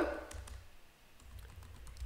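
Computer keyboard typing: a quick run of faint keystrokes.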